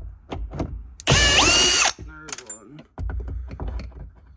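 Cordless drill/driver backing out an interior trim screw: a few short clicks, then about a second in the motor runs at full speed for just under a second, its whine stepping up in pitch, followed by a lower, slower run near the end.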